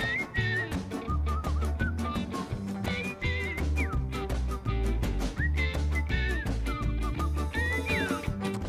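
Live acoustic ska band playing an instrumental passage: upright bass and drums keep a regular beat under acoustic and electric guitar, with a high lead melody that slides and wavers in pitch.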